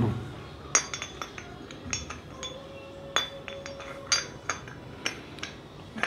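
Metal two-stroke engine parts, a power valve and the cylinder block, clinking and tapping as they are handled and set down: a dozen or so light, irregular clicks.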